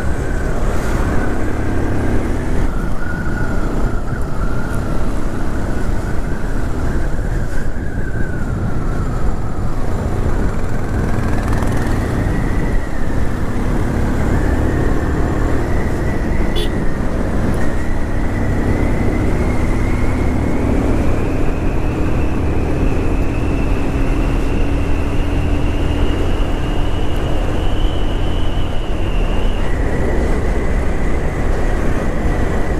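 Motorcycle engine running under way, heard from the saddle under heavy wind rumble on the microphone; its whine climbs slowly in pitch over the second half as the bike gathers speed.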